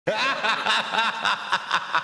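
Recorded laughter used as a title sting: a run of quick, evenly spaced ha-ha bursts, about four a second.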